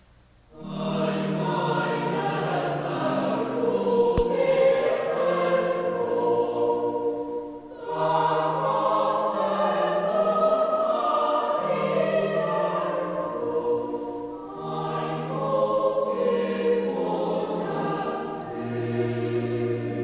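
A choir singing a Christmas carol in sustained chords, phrase by phrase, with brief breaks between phrases. It begins about half a second in.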